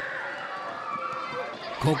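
A crowd of young children shouting and chattering as they run and bounce on an inflatable play dome, with one child's call rising out of the din near the end.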